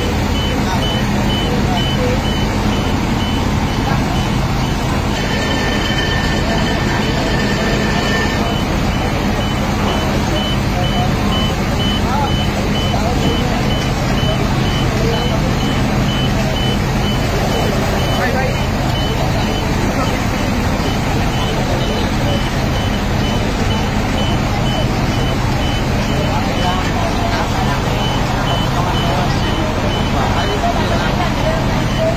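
Fire truck engine running steadily at the fire scene, with a steady run of short, high, evenly spaced beeps throughout. A brief held tone sounds from about five to eight seconds in.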